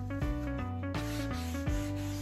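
Background music, with a cloth pad rubbing over the painted wooden chest starting about a second in, working dark antiquing wax into the paint.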